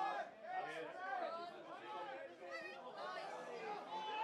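Several voices talking and calling over one another, indistinct, with no single voice standing out.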